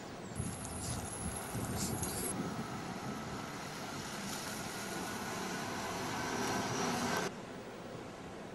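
A bus engine running as the bus comes along the road, growing gradually louder before cutting off suddenly near the end.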